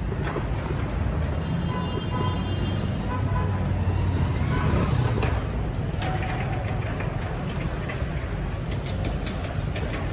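Busy road traffic: a steady rumble of engines and tyres, with a brief high-pitched tone about one and a half seconds in.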